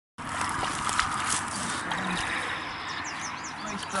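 Outdoor riverbank ambience: a steady rushing noise with a few sharp clicks in the first second and a half, and a small bird's quick chirps about three seconds in.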